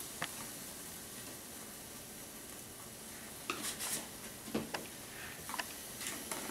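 Ground chuck in a frying pan giving a low, steady sizzle as it starts to cook, with a few short clicks and rattles as seasoning is shaken over it.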